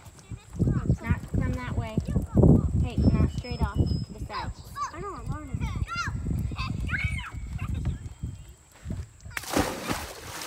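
Indistinct high-pitched voices calling and talking with sing-song rises and falls, and a gust of wind on the microphone near the end.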